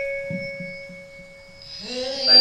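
Karaoke backing track ending on a long held electronic note that slowly fades away, with a little faint voice underneath; new sound swells back in near the end.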